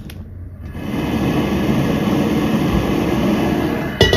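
A high-pressure gas wok burner lit with a stick lighter: the gas flame builds over the first second and then burns with a steady, loud rushing noise.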